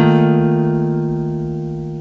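The last chord of a song, played on guitar, held and slowly fading away.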